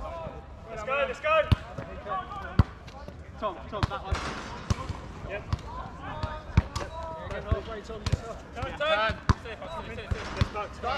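Football being kicked and bouncing on artificial turf: repeated sharp thuds about a second apart, with players shouting across the pitch in between.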